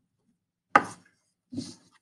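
Two short knocks on a desk about three-quarters of a second apart, the first sharp, the second duller, as craft supplies are handled and set down on the tabletop.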